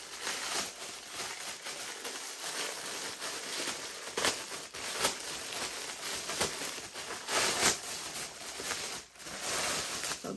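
Thin clear plastic packaging bag crinkling and crackling as it is handled and a plastic microwave splatter cover is pulled out of it, with several sharper, louder crackles.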